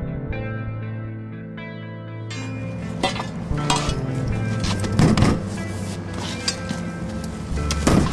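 Background music, joined about two seconds in by metallic clanks and knocks of a Halligan bar and hook against a metal door. The loudest strikes come about five seconds in and again near the end.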